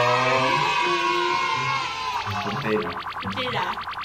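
Outro music: a long held note that fades out about two seconds in, followed by a fast, even rhythmic figure, with voices briefly over it.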